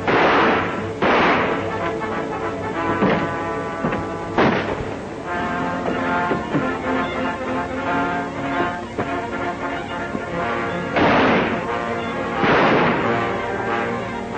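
Revolver shots in a gunfight over an orchestral film score: shots right at the start, about a second in and about four seconds in, then a gap of several seconds and two more near the end about a second and a half apart.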